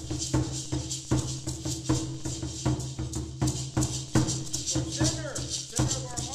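A tall upright ceremonial drum is struck in a steady beat of about two strokes a second, with hand rattles shaking along over it.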